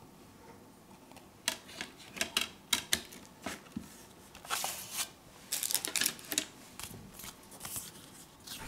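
Plastic CD jewel case being handled as a disc goes back in: a quick run of sharp clicks and snaps, then rustling handling noise of the case and a paper booklet over the last few seconds.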